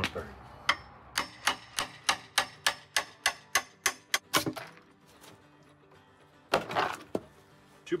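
Hammer tapping fast on wood and metal, about four sharp knocks a second, knocking a drawer slide loose from a particleboard cabinet. A few seconds later comes one louder, longer crunching knock as a board is struck free.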